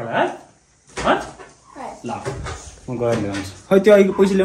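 Voices talking in short, broken phrases with brief pauses between them.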